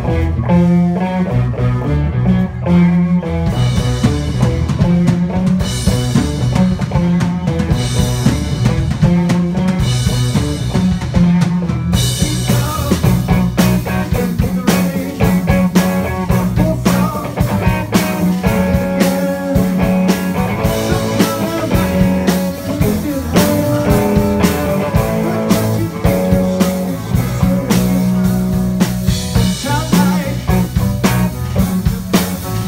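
Live rock band playing: electric guitars, bass, keyboard and drum kit. For the first twelve seconds the drums add only short cymbal washes over the bass and guitar; then the full kit comes in with a steady beat.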